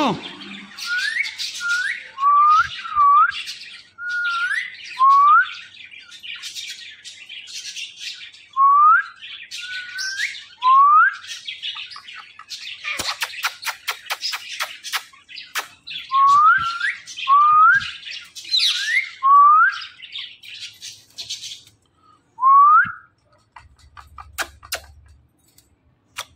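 Caged Indian ringneck parakeets calling: short rising whistled notes repeated over and over, often two or three close together, over harsh scratchy chatter. A quick run of clicks comes near the end.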